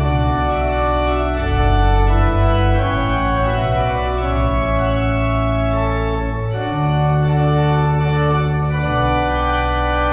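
Pipe organ, an 1897 W. W. Kimball rebuilt by Buzard in 2007, playing a trumpet tune. Full held chords change every second or two over a strong, deep bass line.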